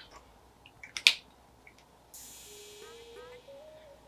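Mostly quiet, with one sharp click about a second in. From about halfway there is a faint steady hiss and a faint low tone that steps up in pitch.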